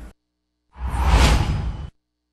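Whoosh transition sound effect from a TV news logo bumper: a single rushing swell with a heavy low end, lasting about a second, that rises in and then cuts off abruptly.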